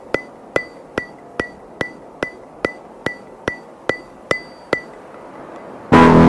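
End-screen sound effect: a steady run of sharp, ringing metallic ticks, about two and a half a second. They stop about five seconds in, and a soft rising swell follows.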